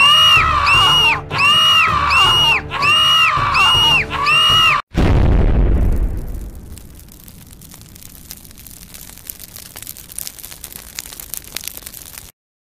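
Cartoon plane crash sound effects: a high wailing tone repeated about nine times in quick succession, cut off by a loud explosion about five seconds in that dies away over a second or two into faint crackling of fire.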